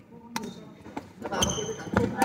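Badminton rally sounds: a racket striking a shuttlecock on the serve about a third of a second in, a short high shoe squeak on the hall floor midway, and another sharp racket hit near the end.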